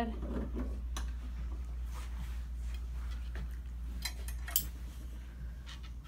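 A few light, sharp clicks and clatters from the grooming arm's noose and clamp being adjusted, over a steady low hum.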